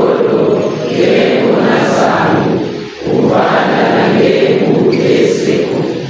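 A congregation of many voices chanting together in phrases, with a short break about three seconds in.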